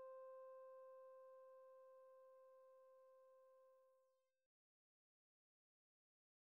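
The last piano note of the piece ringing out faintly, one sustained high tone fading away over about four and a half seconds, then dead silence.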